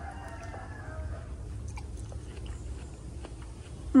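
Faint biting and chewing of fresh watermelon, with small wet clicks.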